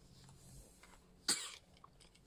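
A single short cough a little past halfway through, otherwise a quiet room.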